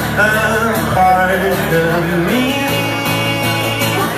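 A man singing and playing acoustic guitar live, a solo acoustic rock song.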